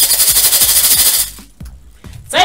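A loud, fast rattling burst lasting about a second and a half, then a few faint clicks.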